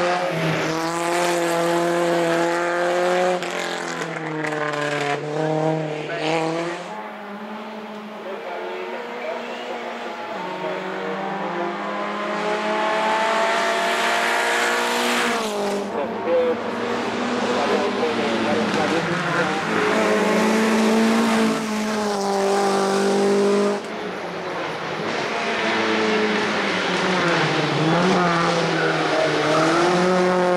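Lancia Beta Coupé race car's four-cylinder twin-cam engine pulling hard uphill. The revs climb and then drop sharply at each gear change, fading briefly as the car gets farther off, then growing loud again as it comes close.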